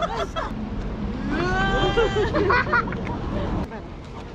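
A startled shriek from a passer-by about a second and a half in, then laughter and exclamations, over a steady low rumble of road traffic that drops away near the end.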